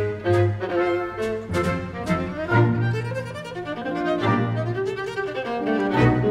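Solo viola playing with a full symphony orchestra, the music punctuated by several sharp, accented orchestral attacks.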